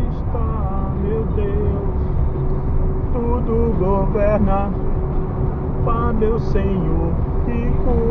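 A voice singing a gospel song, with held, wavering notes, over the steady low rumble of a car driving on the highway, heard from inside the cabin.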